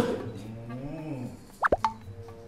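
Water-drop 'plop' sound effects: three quick plops, each a fast sweep in pitch, near the end, over quiet background music.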